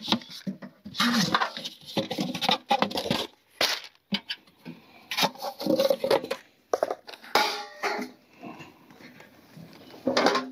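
Unpacking a Robens Hunter tent stove by hand: cardboard packing rustling and scraping as it is pulled out of the firebox, with irregular knocks and scrapes of the metal stove body, and the stove being tipped over near the end.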